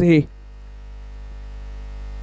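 Steady low electrical hum, slowly getting a little louder, with no other sound over it after a brief word at the start.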